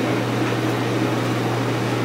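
Steady low hum with an even hiss: the room tone of a meeting room.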